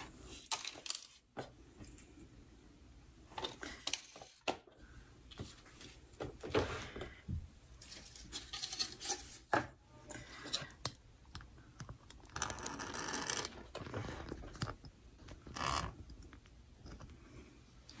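Small sewing pieces and supplies being handled and put away: irregular rustling and crinkling with scattered light clicks and taps.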